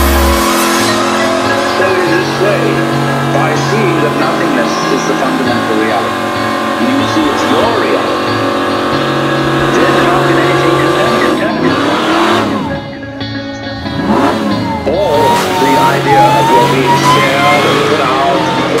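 Electronic music with a stepped bass line, mixed over a car burnout: the engine revs and the spinning rear tyres squeal.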